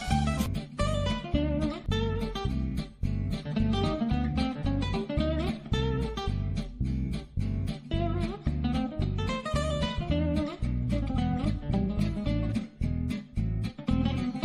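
Background music: acoustic guitar playing a steady stream of plucked notes over a regular bass pulse.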